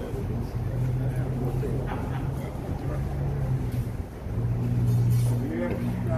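A steady low engine hum that drops out briefly about four seconds in and comes back louder, under the chatter of a small crowd.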